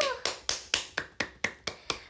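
A person clapping her hands: about eight quick, sharp claps at roughly four a second.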